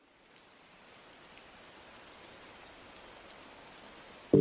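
Faint recorded rain, an even patter that fades in gradually, leading into the next lofi track.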